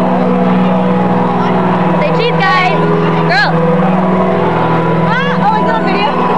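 A concert crowd screaming and whooping, with many short high cries rising and falling, over a steady, held low chord from the stage sound system.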